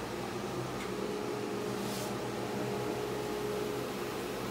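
JET wood lathe running steadily with no cut being made: an even motor hum with a held tone over it.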